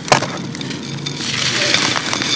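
Dry grainy sand bar pieces crumbled between the fingers: a sharp crack as a chunk breaks just at the start, then a steady gritty rustle of crumbs and sand pouring into a clay pot in the second half.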